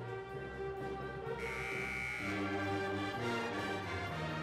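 Instrumental music: held notes that change every half second or so, with a bright high note held for about a second, starting about a second and a half in.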